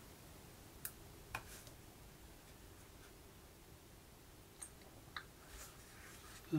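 Near silence with a few faint, short clicks of plastic over-ear headphones being handled and their buttons pressed in the hands.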